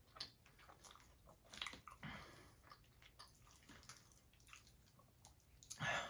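Faint close-up chewing of a mouthful of loaded nacho fries, with small scattered mouth clicks and soft wet sounds. A louder brief rustle comes near the end.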